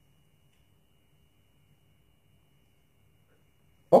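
Near silence: faint room tone with a thin, steady high-pitched whine and a low hum underneath.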